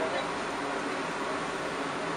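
Steady hum and hiss of an Aquatech sewer-cleaning truck's machinery running while its high-pressure water jet clears the drain line.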